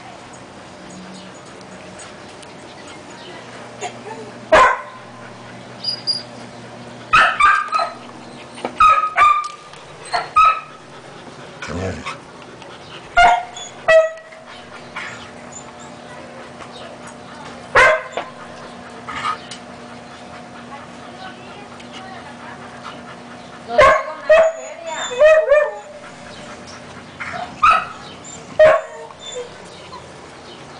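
Siberian husky puppies, about five weeks old, yipping and whimpering in short, high calls, about a dozen of them coming in small clusters.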